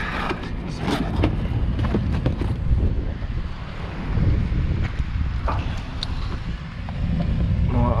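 Rustling and crackling of a stiff black plastic membrane being handled, with scattered clicks and scuffs, over a steady low rumble.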